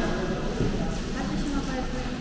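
Station concourse ambience: indistinct voices of travellers echoing in a large hard-floored hall, with footsteps on the tiles.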